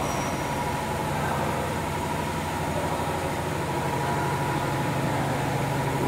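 Tissue paper production machinery running steadily: a continuous mechanical hum with a low drone and a higher whine.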